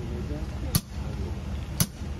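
Steady low rumble of an idling locomotive, with two sharp clicks about a second apart.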